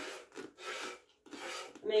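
Goat being milked by hand: about three short squirts of milk into a pail.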